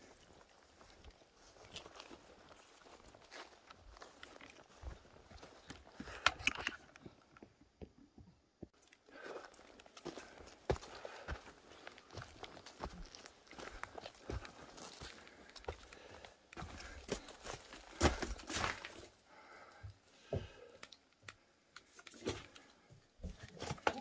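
Footsteps of a person walking over grass and dry pine-forest floor: irregular, light crunching and scuffing steps, a few louder than the rest.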